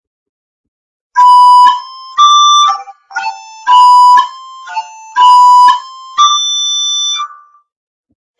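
Finale Notepad playing back a short notated melody in its synthesized soprano recorder sound: about eleven notes, the last one held longer. It starts about a second in.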